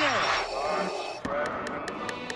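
A man's voice holding a drawn-out call that falls in pitch and dies away just after the start, then a noisy stretch with a second, shorter call about a second and a half in.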